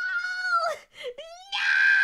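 A person's high-pitched, drawn-out vocal cries: a held cry at the start, a brief one about a second in, and a long steady one starting about a second and a half in, in a fit of laughing over a mishap.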